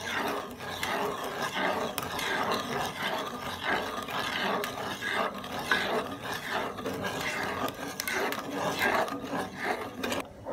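Wooden spoon stirring custard mixture in a pan, scraping the bottom in a rough sound repeated a few times a second; the stirring is kept up without stopping so the milk and custard powder thicken.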